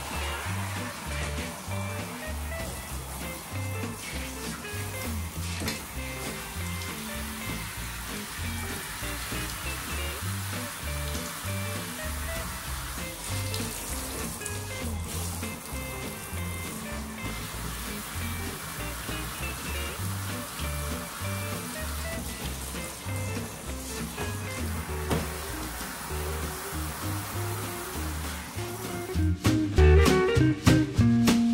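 Background music with a repeating bass line over the steady hiss of a handheld shower head spraying water on a dog in a bathtub. Near the end the music turns louder.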